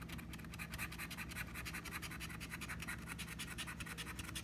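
A $1 casino chip's edge scraping the coating off a scratch-off lottery ticket in quick, rapid back-and-forth strokes.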